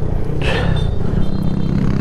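A Honda Monkey 125's single-cylinder engine running steadily, as a motorcycle pulls away.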